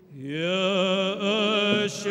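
Male voices singing Byzantine liturgical chant. A voice enters with an upward glide and holds a long note with vibrato over a lower sustained voice. There is a short sharp click near the end.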